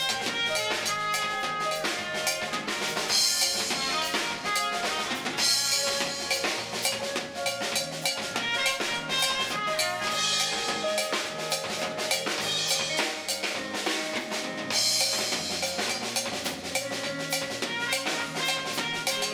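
Live instrumental band playing: a drum kit with busy snare and bass drum and a cymbal crashing several times, under electric bass, trumpet and keyboard. The trumpet plays held notes over the rhythm section.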